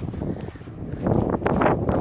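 Wind buffeting the microphone, an unsteady rushing rumble that eases about half a second in and grows louder again after about a second.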